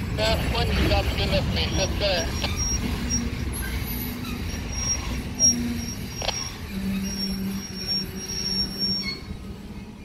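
A string of covered hopper cars rolling slowly along a yard track: a steady low rumble, with thin high-pitched wheel squeal coming and going through the second half.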